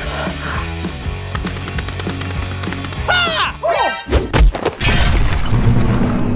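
Cartoon background music with a beat. About three seconds in come quick falling whistle-like sound effects, then a run of crashing thumps, the sound effects of a cartoon scuffle.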